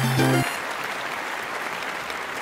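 Applause with some cheering, steady after the last notes of a short jingle end about half a second in.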